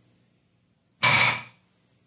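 A single short breathy exhale, like a sigh, lasting about half a second, about a second in, over a faint steady low hum.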